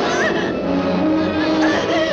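A woman's high, wavering, choked cries as she is being strangled, heard over a loud dramatic orchestral score.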